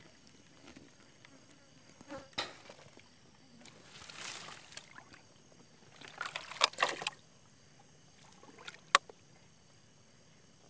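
Hands splashing and sloshing in shallow muddy water, digging into an eel burrow. The splashing is loudest in a cluster about six to seven seconds in, with one sharp click near the end. Faint steady insect chirring runs underneath.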